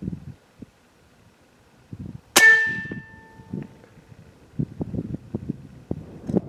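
A single shot from an American Air Arms .357 Slayer PCP air rifle a little over two seconds in: a sharp crack followed by a metallic ring that dies away over about a second. Soft low knocks from the rifle being handled come before and after the shot.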